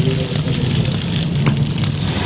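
Chocolate-oat mixture frying in oil in a pan and being stirred, a steady sizzle over a continuous low hum.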